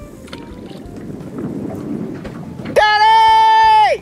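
Low wind and water noise, then about three-quarters of the way through a loud, steady high tone held for about a second that drops in pitch as it cuts off.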